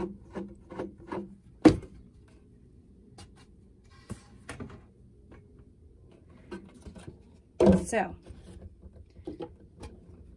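Plastic bottle and screw-on lid being handled on a table. A run of light clicks comes first, then a single sharp knock about two seconds in as something is set down, then faint taps and rustles.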